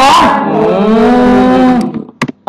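A man's voice: a short stretch of speech, then one long drawn-out vowel held for over a second, like a hesitant 'uhhh' while he thinks.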